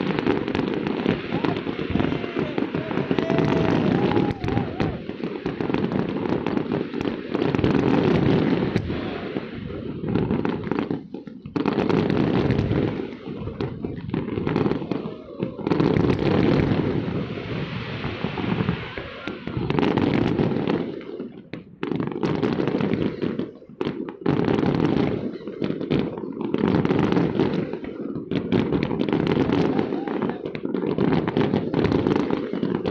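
Large fireworks display: a dense, near-continuous run of shell bursts and crackling bangs, with brief lulls a few times.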